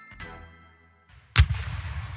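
A single loud bang about one and a half seconds in, followed by a low rumble that dies away over about a second.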